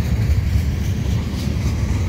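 Eastbound Canadian Pacific mixed freight train rolling past close by, a steady, loud low rumble.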